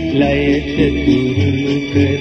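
A recorded Sinhala popular song playing, with a bass line and a pitched melody over a steady rhythm.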